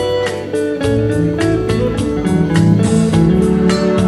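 Instrumental intro of a pop ballad played live: electric guitar over a backing track with a steady beat.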